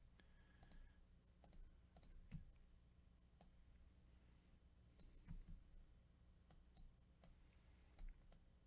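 Faint, irregular computer mouse clicks and keyboard taps, a slightly louder cluster about two and a half seconds in and another around five seconds in.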